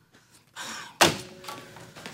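A corded desk telephone's handset banged down onto its base: one sharp plastic clack about a second in, fading quickly.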